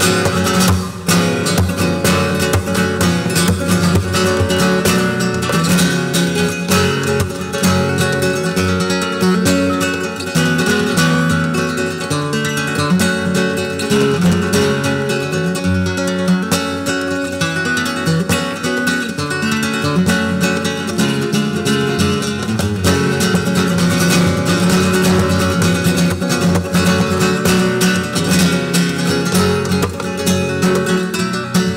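Solo flamenco guitar, a nylon-string acoustic guitar, played continuously with fast strummed passages and shifting chords.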